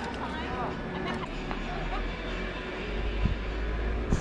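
Steady low rumble on the microphone, with faint indistinct voices in the first second or so and a sharp knock a little over three seconds in.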